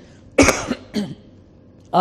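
A single sharp cough close to the microphone, about half a second in, trailing into a brief vocal sound.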